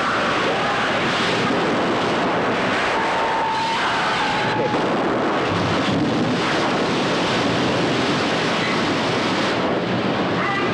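Large gas-fed fire effects on a film set burning with a loud, steady rushing noise and no sudden bang.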